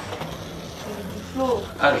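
Skateboard wheels rolling over a ramp and tarmac: a steady rolling noise. A voice says "ah" near the end.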